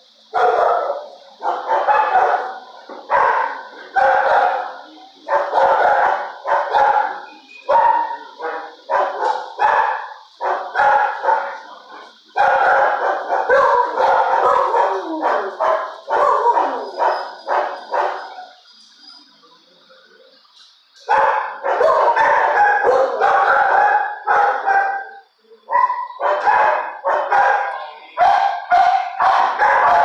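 Dogs in a shelter kennel barking over and over, one to two barks a second, with a pause of about two seconds about two-thirds of the way through.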